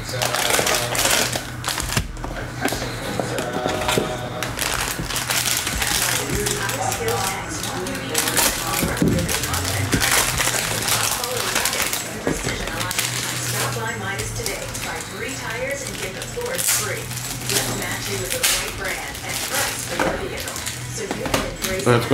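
Foil trading-card pack wrappers crinkling, rustling and tearing as packs are handled and opened, with a cardboard box being handled: a dense run of crackles, with background music underneath.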